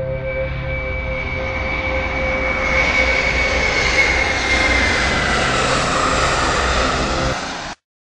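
Jet airliner diving: a rushing engine and air roar that builds, with a whine slowly falling in pitch, then cuts off suddenly near the end.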